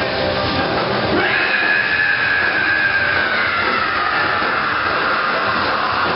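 Live rock band's loud, distorted amplified sound with a long high-pitched electric guitar feedback squeal that starts about a second in and slowly slides down in pitch, typical of the ringing-out at the end of a song.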